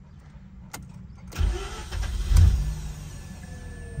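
Mazda RX-8 rotary engine warm-starting: a click, a short burst of starter cranking, then the engine catches with a brief rev flare and settles into a steady idle. It fires on the first turn of the key, which the owner puts down to compression that tested near perfect.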